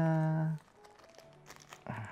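Small plastic bag of silicone ear tips crinkling faintly with light clicks as it is handled and the tips are picked out.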